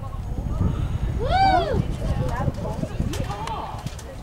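Horse cantering toward a jump, hoofbeats thudding on the arena's sand footing. A single high call, rising and then falling in pitch, is the loudest sound, about a second and a half in, and voices follow near the end.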